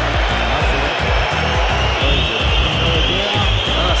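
Background music with a heavy, steady beat over a constant rushing noise.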